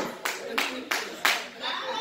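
About five hand claps in quick, uneven succession, followed by a voice near the end.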